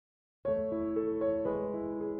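Background piano music that begins about half a second in, with sustained notes and chords.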